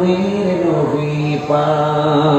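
A man's voice chanting in the sung style of a Bengali waz sermon, holding one long note that steps down slightly in pitch about a second in and is then held steady.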